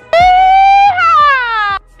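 A woman's loud, high-pitched "yeehaw" whoop of celebration: a long held "yee" that rises slightly, then a falling "haw" that stops just before the end.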